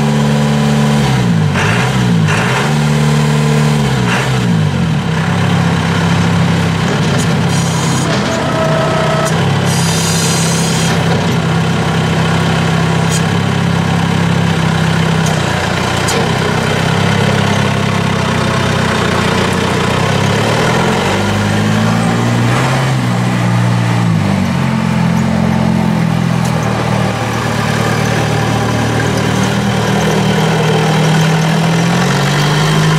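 A 2009 John Deere 5095M tractor's turbocharged four-cylinder diesel running as the tractor drives. Its engine pitch dips and rises several times in the first few seconds and again about twenty seconds in, and holds steady in between.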